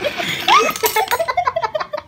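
Someone giggling: a breathy rush, then a quick run of short, high laughs.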